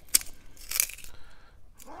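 Wooden carpenter pencil being twisted in a handheld carpenter-pencil sharpener: two short crunching scrapes of the blade against the wood, the second longer, about half a second apart. The blade is tearing the wood rather than shaving it cleanly.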